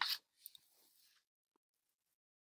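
A short mouth noise from the narrator just after she stops speaking, then a faint click about half a second in, followed by near silence.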